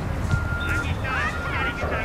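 Children's high-pitched shouts and calls from around the pitch, with wind rumbling on the microphone.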